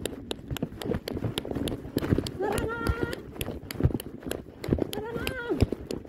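Quick, irregular running footsteps, with a woman's voice twice calling out in long, drawn-out high shouts.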